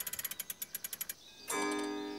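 Cartoon clockwork ticking fast, about a dozen ticks a second, for about a second. After a brief pause, a held chord-like tone starts about one and a half seconds in.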